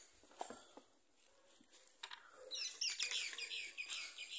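Small birds chirping in quick, high, falling notes that start about halfway through and keep up densely, after a couple of faint knocks in the first second.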